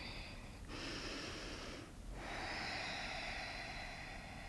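Faint, slow breathing of a woman holding a seated forward fold: two long breaths of about a second each, with a short pause between them.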